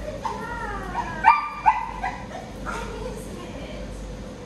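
A dog barking: two sharp barks in quick succession about a second and a half in, followed by a couple of shorter, weaker yips.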